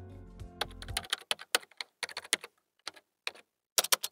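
Computer keyboard typing: an irregular run of quick key clicks. Background music tones end about a second in, as the clicks start.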